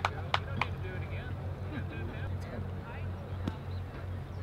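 Faint background voices of people talking, over a steady low hum. A few sharp clicks stand out, two early on and one near the end.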